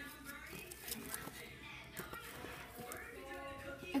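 Faint background music with held notes, with a few light taps and rustles from a plastic toy and a cardboard box being handled.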